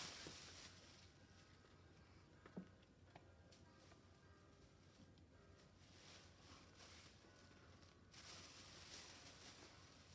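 Near silence with faint rustling of a plastic shopping bag being handled, once at the start and again for the last two seconds, with a single soft click in between.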